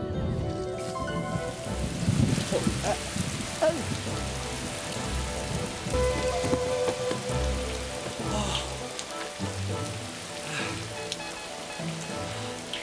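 Steady rain pouring down, starting about a second in, with low music playing underneath.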